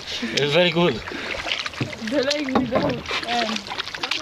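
People's voices talking in a canoe, with the light splashes and drips of paddles working the lake water between the words.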